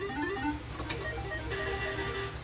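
Island 2 slot machine playing its electronic tune: a quick run of short stepped beeps as a win is counted into the credits. About three-quarters of the way through, steadier held tones take over as the reels spin.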